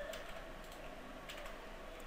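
A few faint clicks of computer keyboard keys being pressed while code is entered.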